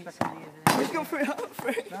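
A football is kicked with a light knock, and about half a second later there is a much louder slam as the ball hits the goal end. Voices react straight after.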